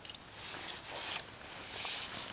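Faint rustling of winter clothing and snow as a person kneels down on snow-covered ice.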